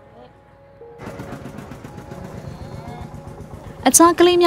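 Low background sound that grows busier about a second in, with faint voices in it, then a loud voice starting right at the end.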